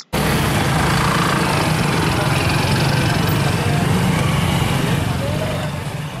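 An engine running steadily under the chatter of a crowd of people, fading out near the end.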